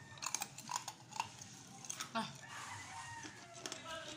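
Close-up mouth sounds of eating: a quick run of sharp smacks and clicks while chewing, easing off about halfway through.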